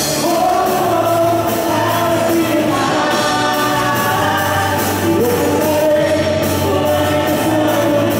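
Live Christian worship band playing a praise song: several voices singing together over electric guitars, keyboard and drums, with a steady drumbeat.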